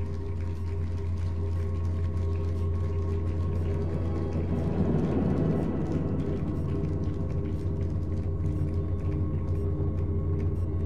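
Live ambient drone music on electric guitar and keyboard: a steady low drone under layered held tones, swelling into a denser, louder passage around the middle.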